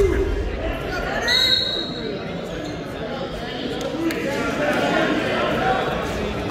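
Voices of coaches and spectators calling out across a gym that echoes, with a heavy thump at the very start.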